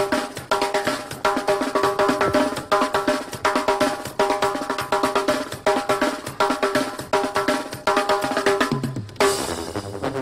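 Live duranguense band playing an instrumental passage: a fast, driving snare and bass-drum beat under repeated keyboard chords in short phrases, with no singing. The beat and chords break into a new figure near the end.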